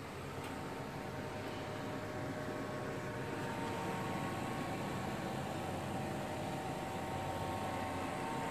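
Steady background hum and hiss of a running fan, with a few faint steady tones.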